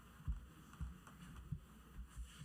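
Faint room noise with four soft, irregular low thumps, the kind of knocks and bumps picked up by a table microphone while people move about the room.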